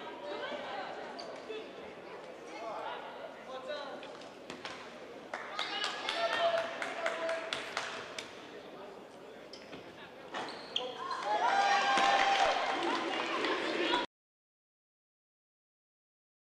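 Basketball game sound in a gymnasium: voices of players and crowd over arena ambience, with a basketball bouncing on the hardwood court. The sound cuts off abruptly near the end.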